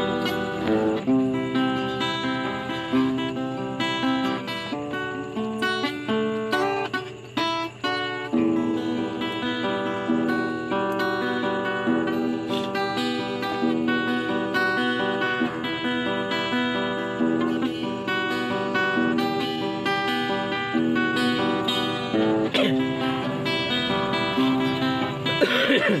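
A guitar played by hand, with picked and strummed notes running on continuously and a brief break in the playing about seven seconds in.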